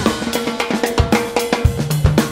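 Funk band playing live: a tight groove of drum kit and cowbell strikes over electric bass and keyboard.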